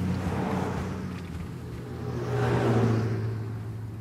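Car driving along, heard from inside the cabin: a steady low engine hum under road and tyre noise, which swells about two and a half seconds in and fades again.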